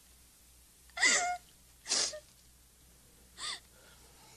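A young woman sobbing: three short, breathy gasping sobs, two loud ones about a second and two seconds in and a fainter one near the end.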